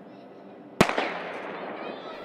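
A single starting-pistol shot a little under a second in, sharp, with a long echoing tail around the stadium: the signal that starts the race.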